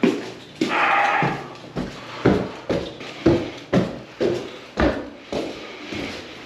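Footsteps climbing a flight of indoor stairs, a thump about twice a second. A brief creak comes about half a second in.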